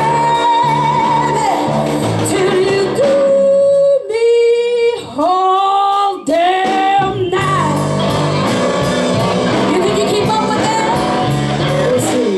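Live blues band (electric guitars, bass guitar and drum kit) playing behind a female lead singer. About four seconds in the band drops out and she sings a few long, sliding notes unaccompanied, then the band comes back in about three seconds later.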